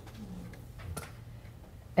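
Quiet room tone with a steady low hum and a faint murmur near the start. A single sharp click comes about a second in, followed by a few fainter ticks.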